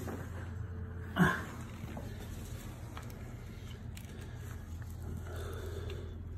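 A man's short grunt about a second in, then a few faint clicks of handling as a nut is held under the metal frame of a stroller wagon while a screw is fitted, over a steady low hum.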